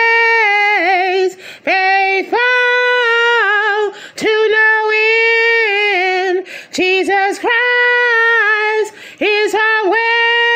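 A woman singing unaccompanied, holding long high notes with vibrato in phrases separated by short pauses.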